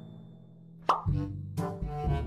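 Bouncy, cartoonish background music that drops out for about a second, then comes back with a quick rising 'plop' sound effect.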